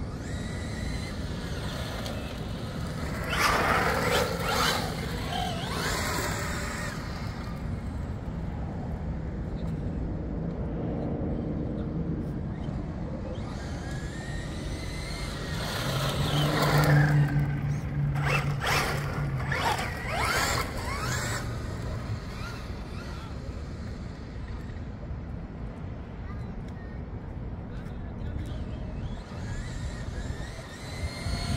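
Traxxas Ford Raptor-R RC truck's brushless motor whining as it is driven around on asphalt, the pitch rising and falling with throttle. It is loudest in two passes, a few seconds in and again around the middle.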